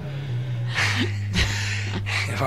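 A person laughing in two short breathy huffs about a second in, over a low, steady background music bed.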